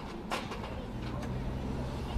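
A vehicle engine running steadily at a low hum, joined about a second in, with a short hiss about a third of a second in.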